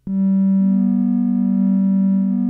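Ciat Lonbarde analog synthesizer drone: a steady low tone rich in overtones starts abruptly, and a second, slightly higher note joins about half a second in, the two held together.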